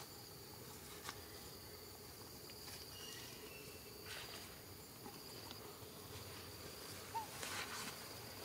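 Faint steady trilling of insects such as crickets, with brief rustles of grass as the young monkeys move, the loudest near the end.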